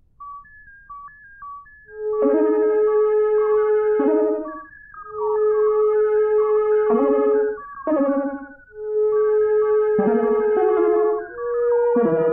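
Home-recorded synthesizer music. After silence a few short high notes come in, then a lead holds one long note for about two seconds at a time, three times, with a busier higher part above it.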